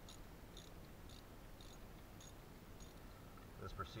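Faint insect chirping, short high chirps about twice a second, over a low steady background rumble; otherwise near silence.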